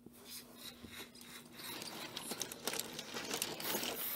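Rustling and many small clicks of cotton-wool snow and small toy engines being moved about by hand, getting louder as it goes.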